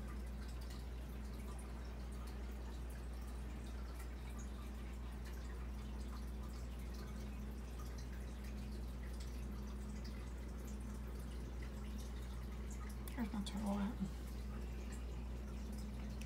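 Aquarium running steadily: a low, even hum with faint bubbling and trickling from a stream of air bubbles rising through the water.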